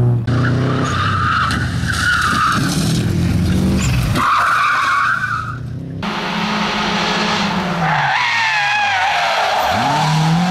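Rally car engines revving hard through corners. Over the first six seconds there are three bursts of high tyre screech from a small car sliding. After a cut, a second car's engine revs up and falls off, and its tyres squeal through a tarmac bend near the end.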